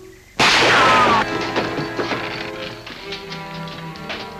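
A single loud rifle shot about half a second in, ringing on for most of a second with a falling whine like a ricochet, followed by tense background music.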